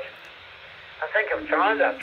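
A voice heard through a Whistler radio scanner's small speaker, thin and tinny like a received FM radio transmission, starting about a second in after a faint hiss.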